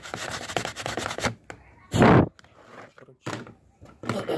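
Quick scrubbing strokes on a plastic motorcycle fairing piece as its gluing surface is rubbed clean. About two seconds in there is one loud bump, then a few faint handling noises.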